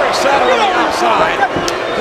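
A few sharp thumps of wrestlers hitting the canvas of a wrestling ring, about three, over a steady din of arena crowd voices and commentary.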